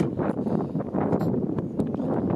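Wind buffeting the microphone outdoors, an irregular low rumbling noise.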